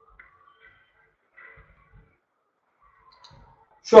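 Quiet room with a few faint, scattered clicks, then a man starts speaking near the end.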